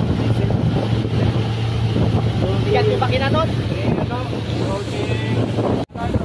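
Outboard motor running steadily at speed, a low drone under wind buffeting the microphone and water rushing past the hull. The sound cuts out briefly near the end.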